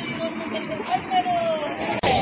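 A crowd of women chanting protest slogans together, over steady road-traffic noise.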